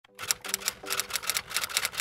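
Typewriter keystroke sound effect: rapid sharp clicks, about five or six a second, over soft held musical notes that change like chords.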